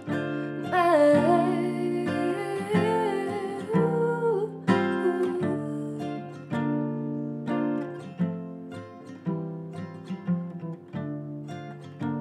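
Dreadnought acoustic guitar picked in a steady repeating pattern of notes. About a second in, a wordless sung vocal line glides over it for a few seconds, then the guitar carries on alone.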